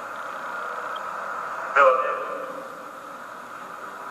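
A voice speaking one short phrase on stage about two seconds in, over a steady background hiss.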